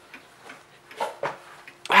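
Late-1920s Sessions Berkeley-model tambour mantel clock ticking, a series of short sharp clicks. A person's brief "ah" comes in at the very end.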